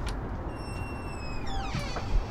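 Front door swinging open on a squeaky hinge: a click at the start, then a high squeal that holds its pitch and then slides steeply down as the door swings.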